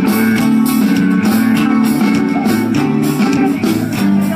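Live band music picked up from the crowd on a phone, loud, with sustained notes over a steady beat.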